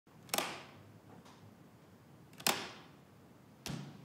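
Three sharp clicks or knocks, the first two about two seconds apart and the third about a second later, each dying away in an echo of a large, hard-walled empty room.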